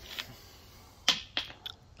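A few short, sharp clicks over faint background: one just after the start, then three close together in the second half.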